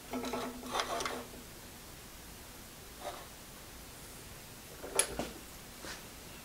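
Steel rod being handled in a bending jig on an arbor press: a short metallic scrape with a ringing tone in the first second or so, a faint tap about three seconds in, then a sharp metal clink about five seconds in.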